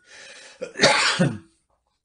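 A man clearing his throat: one loud burst lasting just under a second, starting a little over half a second in.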